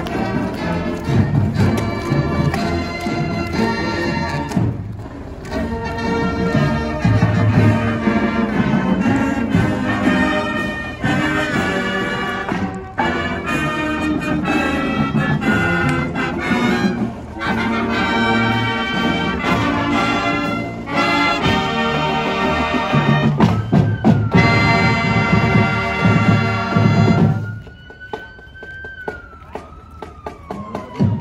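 Marching band brass and woodwinds playing a march, which stops near the end; over the last few seconds a siren wails, rising then falling in pitch.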